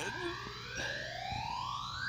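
A single whistle-like tone gliding smoothly and steadily upward in pitch.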